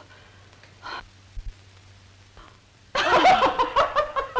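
A woman laughing hard in rapid pulses, breaking out about three seconds in after a quiet stretch with one short breath-like sound near one second.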